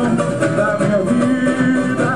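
Samba school parade music: a samba-enredo sung over plucked strings and percussion, loud and steady.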